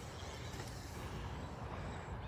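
Faint, steady outdoor background noise with a low rumble and no distinct events.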